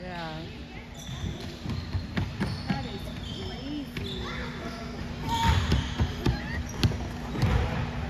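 Balls bouncing on a wooden gym floor, irregular thuds echoing around a large hall, the heaviest about five and a half to seven and a half seconds in. Children's voices and chatter carry in the background.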